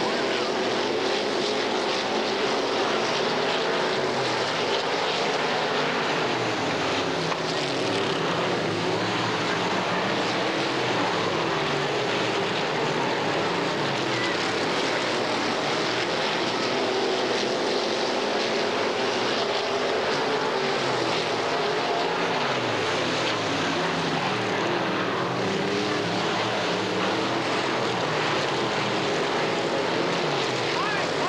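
A pack of dirt-track race cars running laps, several engines sounding at once, their pitch repeatedly rising and falling as the cars pass and come off the turns.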